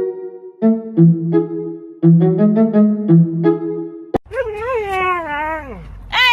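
String music with short, quick notes for about four seconds, then, after a cut, a husky's long, wavering whine-howl that drops in pitch at the end.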